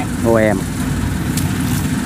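Kubota DC70 Pro rice combine harvester's diesel engine running steadily under load as it cuts and threshes rice, a constant low drone. A short spoken word cuts in about half a second in.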